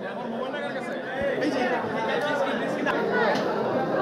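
A crowd of people talking over one another in a large hall, a dense babble of overlapping voices that grows louder about a second in.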